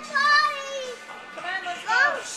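High-pitched voices of young children calling out: one call near the start and a rising-and-falling call near the end.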